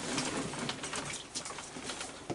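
Raccoons crowded together making soft, coo-like churring calls, with light clicks and scrabbling of feet on the wooden deck boards.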